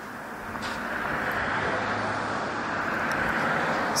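Road traffic noise: a steady rushing of passing vehicles that grows a little louder over the first second and then holds.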